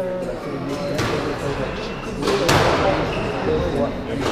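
Squash ball being struck and hitting the court walls: a light knock about a second in, then a loud, sharp crack that rings in the court about two and a half seconds in, over people talking.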